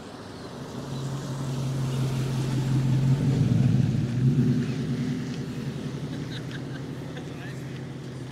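A first-generation Ford F-150 SVT Raptor's V8 driving past, its steady engine note swelling as it approaches, loudest about three to four seconds in, then fading as it moves away.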